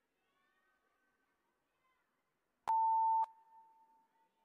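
A single electronic beep: one steady tone about half a second long, starting and stopping with a click, then echoing away in a large hall.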